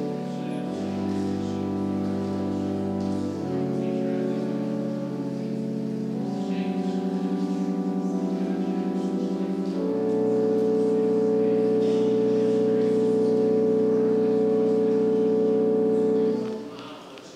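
Pipe organ playing slow sustained chords that change every few seconds, then holding one long final chord for about the last six seconds.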